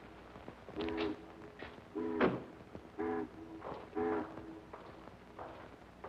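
A horn sounding four short chord blasts, evenly spaced about a second apart, with a sharp knock a little past two seconds in.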